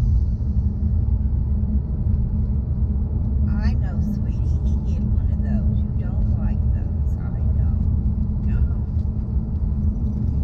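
Steady low road and engine rumble heard inside the cabin of a car driving along at road speed.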